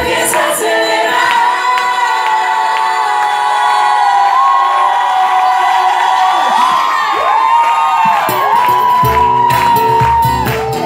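Live pop ballad: a female voice holds long, wavering high notes over sparse accompaniment while the audience cheers and sings along. The full band's bass and drums come back in about nine seconds in.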